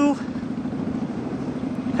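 Kawasaki Vulcan Mean Streak 1600's V-twin engine running steadily while the bike is ridden, an even engine-and-road noise with no distinct events.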